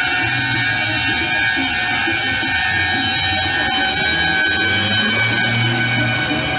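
Several truck air horns held down together, making a dense, unbroken chord of steady tones, over the low engine rumble of trucks passing close by.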